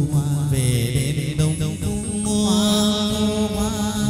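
Hát văn (chầu văn) ritual singing: a singer's voice in wavering, ornamented sung lines over instrumental accompaniment, with a long held note in the second half.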